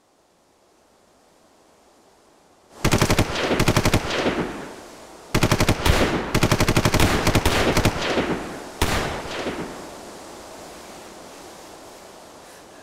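Automatic gunfire in several rapid bursts, starting about three seconds in, the shots coming in long strings with a ringing echo trailing off after each burst. A last short burst comes near the end and the echo dies away.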